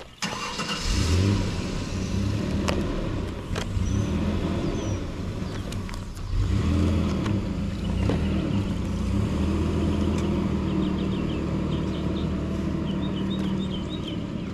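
An engine running steadily. It comes in about a second in, dips briefly around six seconds, then runs on evenly.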